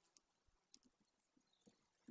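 Near silence, with a few faint, scattered ticks.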